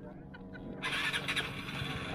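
Vespa 300cc liquid-cooled, fuel-injected single-cylinder scooter engine running, rising sharply in level about a second in as it revs to move off with two riders aboard.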